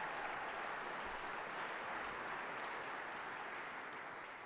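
Audience applauding, an even clapping that fades toward the end.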